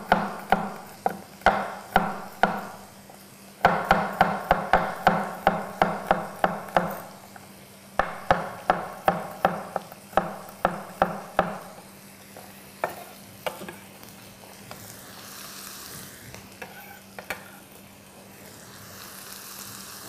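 A kitchen knife chopping garlic cloves on a wooden cutting board: runs of sharp knocks, quickest about four a second, stopping about twelve seconds in. Near the end, a faint sizzle of food frying in the pan.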